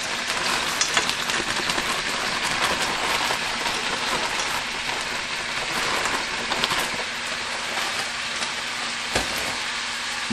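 Frozen broccoli florets sizzling and crackling steadily in olive oil that was preheated for two minutes: ice on the frozen florets spitting in the hot oil. A single knock sounds near the end.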